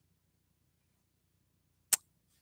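Near silence, then a single sharp click just before the end.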